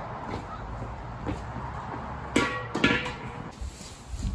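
Two sharp metallic clanks with a brief ring, about half a second apart, over a steady background hiss: a steel propane cylinder being set down and knocked against the patio heater's base.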